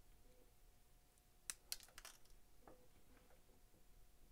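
Near silence broken by a few small sharp clicks of hard plastic handled at close range: plastic model kit parts and a pair of sprue cutters. The clicks come in a quick cluster about a second and a half in, with a couple of fainter ticks later.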